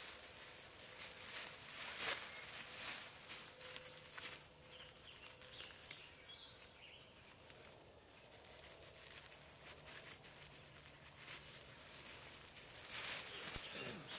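Soft, irregular rustling and crinkling of a plastic bag and leafy plants as wild leeks are pulled from the ground and bagged.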